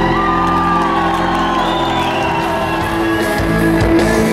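A live rock band plays held, sustained notes through a large PA, with a crowd whooping and shouting over it.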